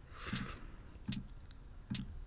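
Three sharp, bright clicks, about three-quarters of a second apart, as hi-hat steps are clicked into a step sequencer one by one.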